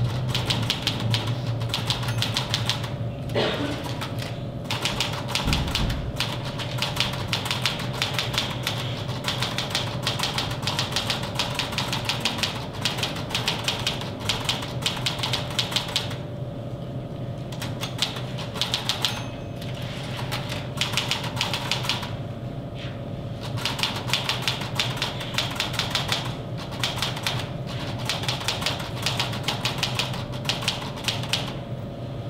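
Fast typing on a keyboard, a dense run of key clicks broken by a few short pauses past the middle, over a steady low hum.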